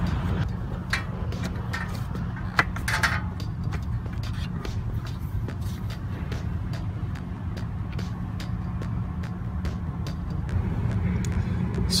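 Scattered clicks and knocks of a motorcycle's plastic side cover being handled and unclipped, over a steady low hum.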